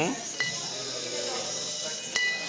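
A light metallic tap on a small brass bowl about half a second in, leaving a thin high ringing tone that lingers, as a toy rabbit is set down on the bowl.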